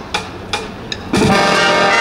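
Sharp percussion clicks keep a steady beat at about two and a half a second. About a second in, the marching brass band comes in loudly with full held chords on tubas, trumpets and saxophones.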